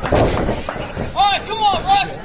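A thud at the start as the wrestlers hit the ring mat, then three short shouted calls in quick succession in the second half, rising and falling in pitch, from ringside voices.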